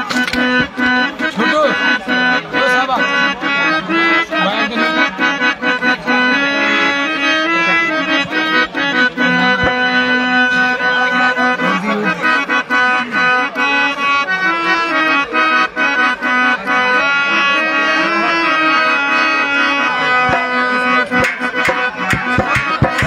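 Harmonium playing a melody over a held drone note, with a hand drum beating steadily along.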